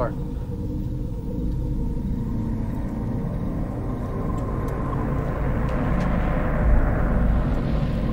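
A car engine's low rumble, with a rushing swell that builds for a few seconds and eases off near the end.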